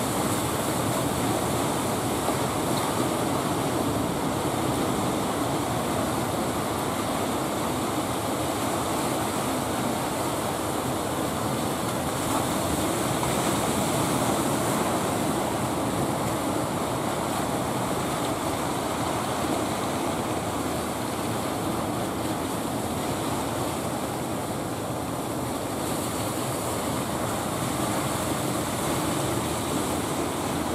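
Ocean surf breaking and washing onto a beach, a steady wash of noise with no let-up.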